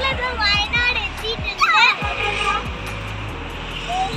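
Young girls' high voices exclaiming and laughing in the first two seconds, over background music with a steady low bass line.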